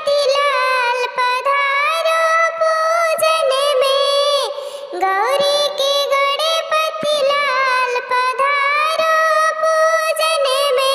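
A high, childlike, pitch-shifted cartoon-style voice sings a Hindi Ganesh devotional folk song. It sings two long melodic phrases with a brief break near the middle.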